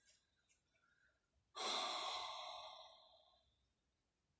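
A woman's single long sigh, a breathy exhale that starts suddenly about a second and a half in and fades out over nearly two seconds.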